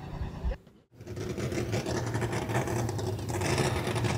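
USRA stock car's V8 engine idling steadily. There is a brief gap about a second in, and after it the idle slowly grows louder.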